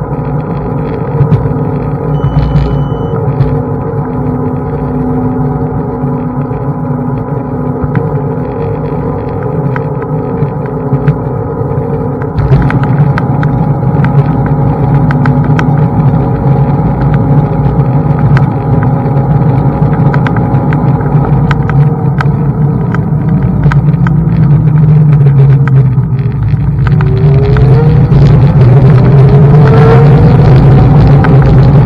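Xiaomi M365 Pro electric scooter being ridden: a steady whine from its hub motor over the rumble and rattle of the tyres and frame on the path, with scattered knocks from bumps. The ride gets louder about twelve seconds in, and near the end the motor's whine rises in pitch as the scooter speeds up.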